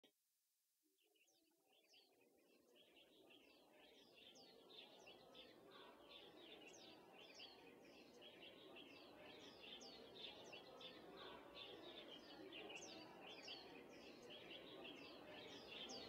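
Faint birds chirping, many short falling chirps in quick succession over a soft ambient background, fading in over the first few seconds.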